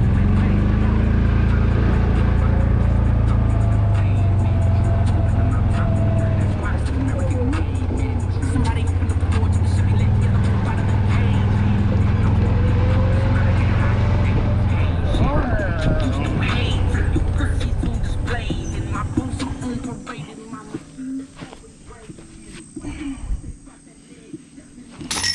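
Golf cart being driven, with a steady low drone from its drive that dies away between about fifteen and twenty seconds in as the cart slows and stops. After that it is much quieter, with scattered light clicks.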